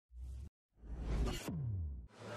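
Opening-title sound effects: a brief low hit, a short gap, then a whoosh that swells and ends in a low tone gliding down in pitch.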